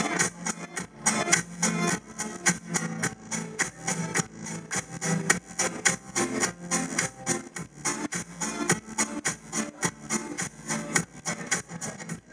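Live band music with electric guitar over a steady beat.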